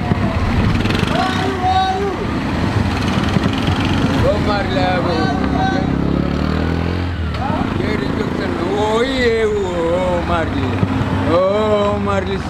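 Men talking, with a motor vehicle's engine running underneath. The engine rises in pitch for a couple of seconds and drops away about seven seconds in.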